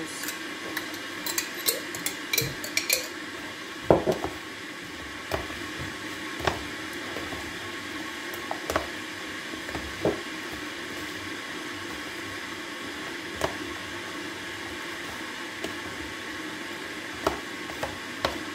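A metal spoon scraping and stirring chopped cucumbers, tomatoes and dill dressed with sauce in a bowl, with scattered clinks and taps against the bowl and a glass jar. A quick run of light clinks comes in the first few seconds, and a sharper knock about four seconds in.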